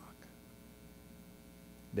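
Faint, steady electrical mains hum from the microphone and sound system.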